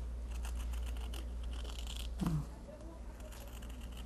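Scissors cutting through cotton fabric backed with fusible web and paper, a run of faint snips, mostly in the first two seconds. A brief vocal sound about two seconds in.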